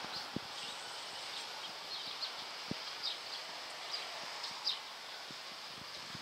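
Quiet outdoor ambience: a steady background hush with scattered short, high bird chirps and a few faint clicks.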